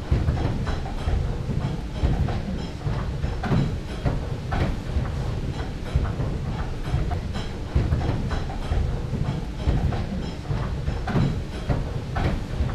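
Water-powered corn mill's gearing turning: large toothed gear wheels and shafts driving the millstones, with an irregular clatter of knocks over a low rumble.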